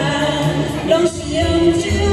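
A man and a woman singing a duet into microphones over a karaoke backing track.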